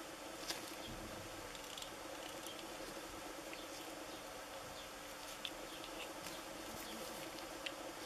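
Faint small clicks and rubbing from handling a 3D-printed resin toy model in nitrile-gloved hands, over a faint steady buzzing hum. The clicks come about half a second in, again past the middle, and once near the end.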